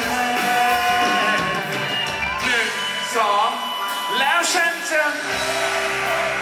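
Live pop band playing with a male lead voice singing over it. A little after five seconds in, the band settles into a steady held chord.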